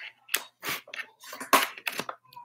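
Handling noise: about five short, sharp clicks and knocks, the loudest about a second and a half in, as a microphone setup is adjusted.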